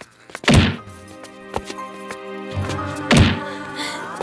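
Two heavy punch sound effects from a film fight, the first about half a second in and the second about three seconds in, over background music.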